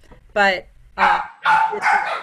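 A dog barking in the background of a participant's microphone on a video call.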